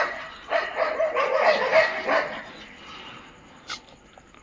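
A pack of dogs barking together, many barks overlapping from about half a second in until just past two seconds, then dying down. The dogs are worked up at an outsider dog near the pack.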